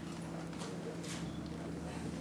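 Hall room tone with a steady low hum and a few soft knocks.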